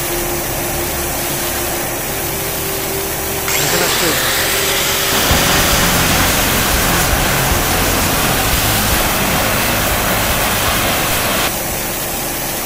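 Low-pressure abrasive water jet cutting a steel pipe: a steady hiss of the high-pressure water-and-abrasive stream against the metal. About three and a half seconds in, a louder, brighter hiss joins and runs until shortly before the end, when it drops back to the jet alone.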